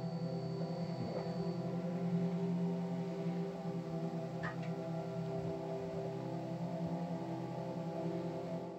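Outro background music made of long, steady held tones, without a beat.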